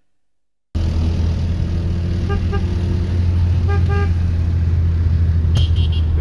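Loud, steady low drone of a car driving, starting abruptly under a second in, with a car horn giving two quick double toots about a second and a half apart and a higher-pitched toot near the end.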